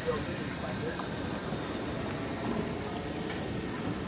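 Indistinct background voices of people over a steady outdoor hiss, with no clear call from the animal in view.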